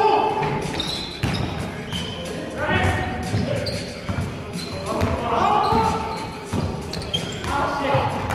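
Basketball bouncing on a hard gym floor during a game, with players shouting to each other several times, the sound echoing in a large sports hall.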